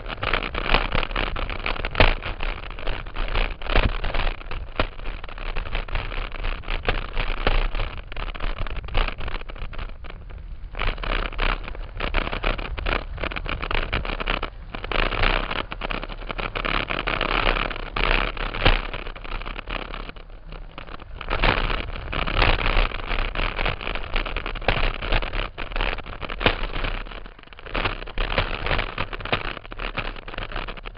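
Mountain bike ridden fast down a rough dirt singletrack: a steady rush of wind and tyre noise, with the bike rattling and clattering over roots and rocks in many sharp knocks. The noise eases off for a moment a few times.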